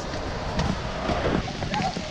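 Steady hiss of heavy rain falling outdoors, with faint voices near the end.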